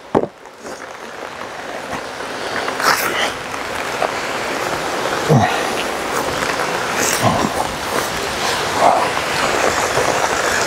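Rain coming down, a steady hiss that grows louder as the shower builds. A few light knocks come as the hive is handled and closed.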